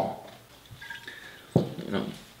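A ceramic mug being picked up from a table, with a short dull knock about one and a half seconds in. A faint thin whine comes just before it.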